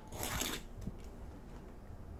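Metal fork tines scraping over the crust of a freshly baked baguette: a faint, dry crackling scratch, strongest in the first half second, followed by a few light ticks. The crackle is the sign of a crisp, crunchy crust.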